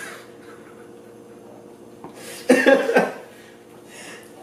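A short burst of laughter about two and a half seconds in, lasting about half a second, over a steady low hum.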